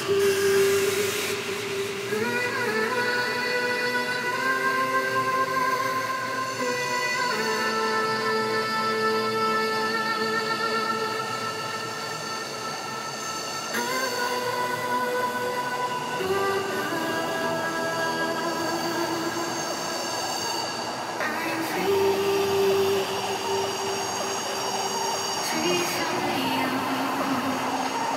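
Breakdown of an electronic dance track: held synth chords that change every few seconds, with no kick drum or deep bass.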